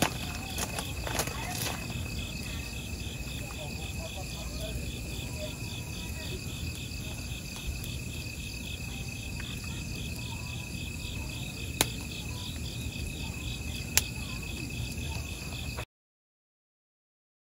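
Crickets chirping in a steady, rapidly pulsing trill over a wood fire burning in a metal fire pit, with two sharp pops from the burning wood near the end. The sound cuts off suddenly just before the end.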